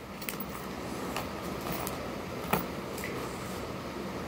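Small cosmetic packaging being handled: a few light clicks and taps, with one sharper click about two and a half seconds in, over a steady background hum.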